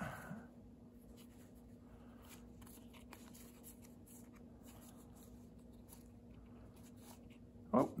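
Faint rustling and soft ticks of unsleeved Magic: The Gathering cards sliding against each other as a hand-held stack is fanned through, over a low steady hum. A voice says "Oh" at the very end.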